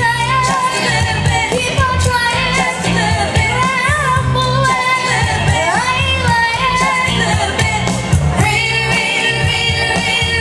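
A young girl singing live into a microphone, amplified through a PA, over instrumental accompaniment with a steady bass line. About five and a half seconds in she sings a rising run, and near the end she holds higher notes.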